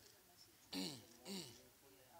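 Near silence broken by two short, faint vocal sounds from a person, about half a second apart, each falling in pitch.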